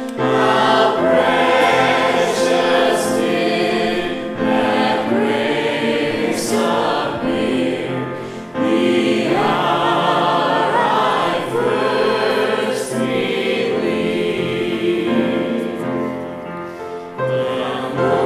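A small vocal group of a man and two women singing a slow song in harmony through microphones, accompanied by grand piano, with short breaks between phrases.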